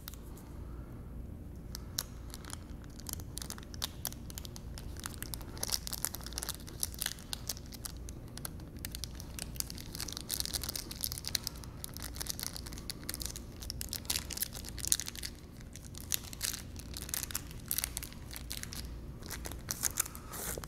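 Crinkling and rustling of a grinder pump's data tag being handled and worked onto its power cable, with many small irregular clicks and crackles close to the microphone.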